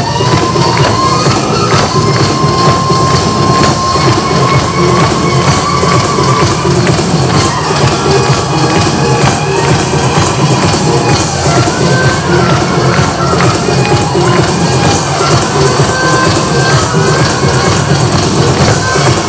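Korean folk percussion music: fast, dense drumming on small hand drums (sogo) and barrel drums, with a high melodic line of held notes over it.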